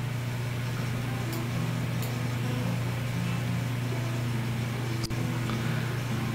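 Steady low hum with an even hiss over it, unbroken except for a brief dip about five seconds in.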